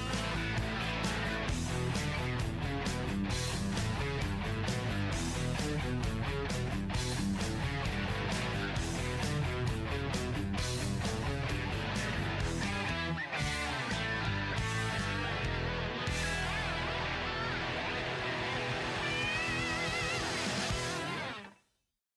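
Rock music with guitar and a steady drum beat, fading out to silence near the end.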